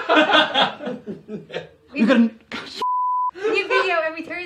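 A single steady electronic censor bleep, a pure tone of about 1 kHz lasting about half a second, dropped in over the talk near the end.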